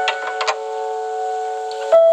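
Solo piano holding a sustained chord, with a few soft clicks in the first half second, then a new chord struck just before the end.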